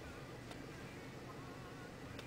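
Low steady hum of a car idling, heard from inside the cabin, with faint thin wavering high tones over it and a small click about half a second in.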